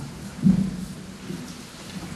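Several people sitting down together on chairs on a wooden stage: low bumping and scraping, with the loudest thump about half a second in.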